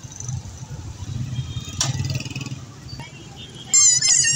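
A low, steady rumble of street traffic with a single sharp click partway through. Near the end a young child's loud, high-pitched excited voice cries out.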